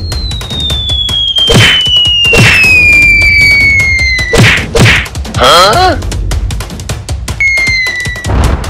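Cartoon fight sound effects over background music: a long whistle that slides down in pitch for about four seconds, several hard whacks, and a brief downward-swooping cry around the middle. A second short falling whistle comes near the end.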